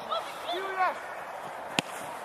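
A football struck hard by a player's boot: one sharp thud near the end, after a short shout.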